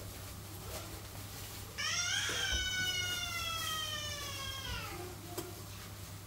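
A house cat giving one long, drawn-out meow that rises briefly and then slowly falls in pitch, starting about two seconds in and lasting about three seconds.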